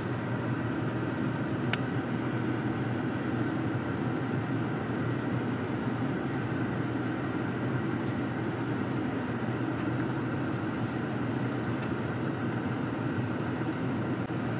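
Steady hum and rush of a car's climate-control fan in the cabin of a parked, switched-on 2020 Toyota, with one faint click about two seconds in.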